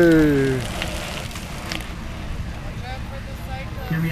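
A long cheering shout of "yeah", falling in pitch and ending about half a second in, then a steady low rumble with faint voices.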